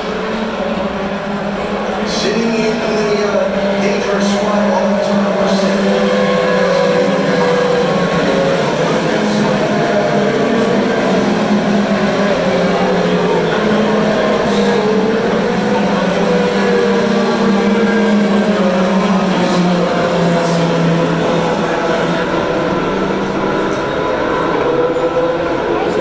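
IndyCars' 2.2-litre twin-turbo V6 engines as a field of cars laps the road course: a continuous loud drone with several pitches wavering up and down as the cars pass.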